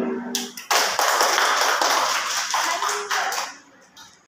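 A held harmonium note fades out, then a small audience applauds for about three seconds, with the clapping dying away near the end.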